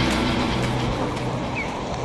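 Steady rush of ocean surf and water washing around a camera held at the waterline, easing off slightly; background music stops just as it begins.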